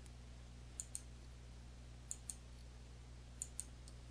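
Computer mouse button clicked three times, each click a quick press-and-release pair, spaced a little over a second apart. The clicks are faint, over a low steady hum.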